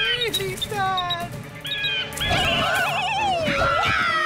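Cartoon bird vocalizations: a few short gliding squawks in the first second or so, then a long wavering, trilling cry from about halfway through, over background music.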